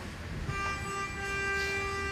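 A single steady pitched tone with overtones, starting about half a second in and held for just under two seconds.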